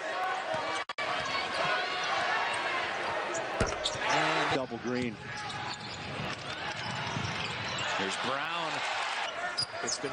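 Game sound from a college basketball arena: a basketball bouncing on the hardwood court over a steady crowd murmur, with voices. The sound cuts out briefly about a second in.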